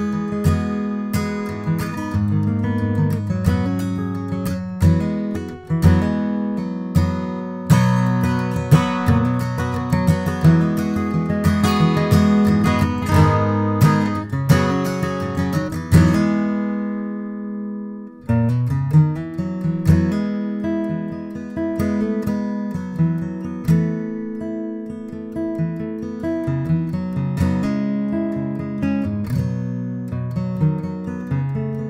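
A 1941 Gibson J-55 mahogany acoustic guitar is played solo, with a flow of picked notes and strummed chords. About sixteen seconds in, a chord is left to ring and dies away for about two seconds, and then the playing starts again.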